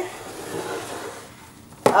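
Soft rubbing and rustling as gloved hands handle a tall plastic pitcher on a countertop, fading over the first second or so.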